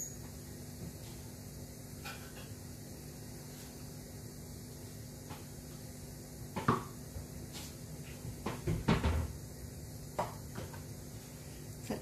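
Kitchen knocks and clatters of items being handled, a single one a little past halfway and a quick cluster soon after, over a steady low hum.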